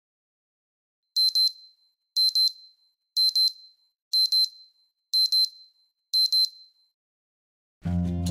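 Smartphone alarm going off: a high double beep repeated about once a second, six times over. Music comes in just before the end.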